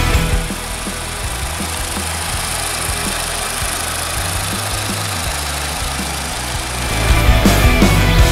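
Volkswagen 1.6-litre four-cylinder engine idling steadily with the hood open. Rock music cuts back in near the end.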